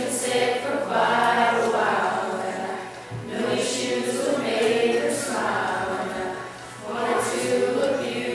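Youth choir of mixed boys' and girls' voices singing together, phrase by phrase, with short breaks between phrases about three seconds in and again near the end.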